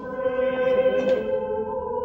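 A choir singing long held chords, swelling just after the start and easing off toward the end.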